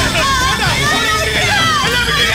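Several voices shouting over one another, with background music underneath.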